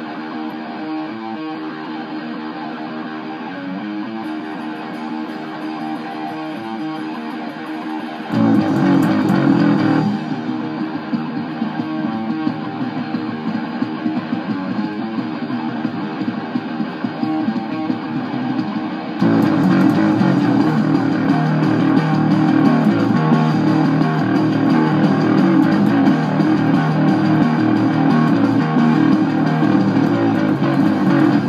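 A hard rock song with electric guitar, with an electric bass tuned a half step down played along to it. The music gets louder and fuller about eight seconds in, and again about nineteen seconds in.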